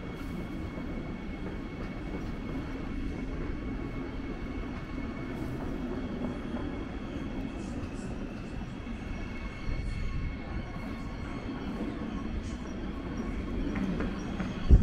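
Electric multiple-unit commuter train moving slowly through the station tracks: a steady low rumble with a faint, steady high tone over it, swelling slightly about ten seconds in.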